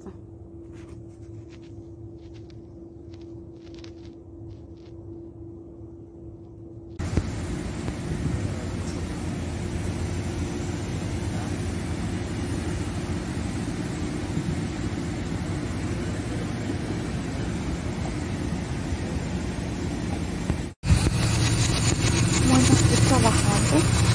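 A quiet steady low hum with faint clicks, then, from about seven seconds in, a louder steady rushing rumble of wind on the microphone. It breaks off suddenly near the end into still louder wind noise with a faint voice.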